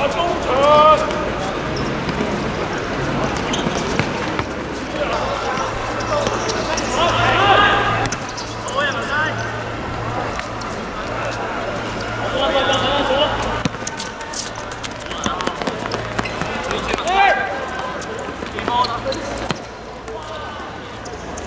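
Players' short shouts and calls during a small-sided football game, with the ball being kicked and bouncing on the hard pitch, over a steady low hum.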